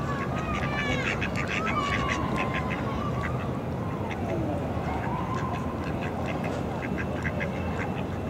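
Mallard ducks quacking in a long run of short calls, over a steady low background noise.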